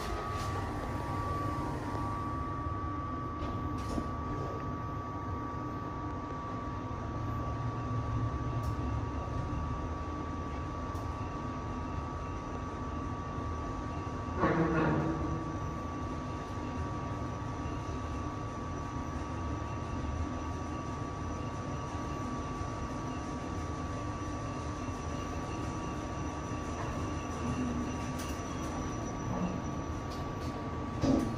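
KONE MonoSpace machine-room-less traction lift travelling upward at its rated 1.75 m/s, heard from inside the car. It gives a steady running hum with a constant high whine. About halfway up there is one brief, louder sweep that falls in pitch.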